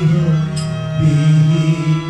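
Live Odissi music accompaniment: a slowly gliding melody line over a sustained drone, with sitar among the instruments, and a single light tick about a quarter of the way in.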